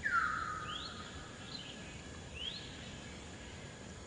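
An infant long-tailed macaque gives one long cry right at the start, falling in pitch and then held for about a second. Short rising bird chirps sound a few times over a faint steady hum of insects.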